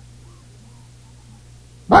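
A low, steady hum with a few faint, short pitched sounds. Then a man's preaching voice starts loudly right at the end.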